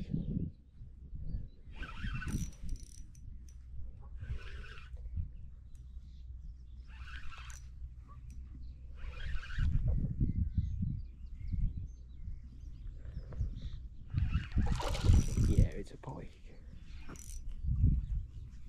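Wind rumbling on the microphone, with short hissing bursts every two to three seconds while a hooked fish is played in at the water's edge.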